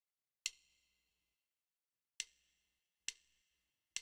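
Count-in ticks of a backing track at about 68 beats a minute: four sharp, briefly ringing ticks, the first two nearly two seconds apart, then three evenly spaced just under a second apart.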